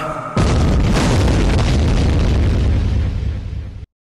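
An explosion-like boom closing a hip hop track: a sudden loud blast about a third of a second in, heavy in the bass, that carries on for about three seconds, fading a little, then cuts off abruptly to silence.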